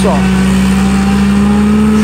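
Tractor engine pulling a forage harvester through giant sorghum, a steady drone under heavy load at low speed, rising slightly near the end.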